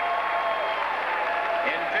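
Audience applauding a placewinner's name in an arena, with the public-address announcer's echoing voice over it. The announcer starts the next name near the end.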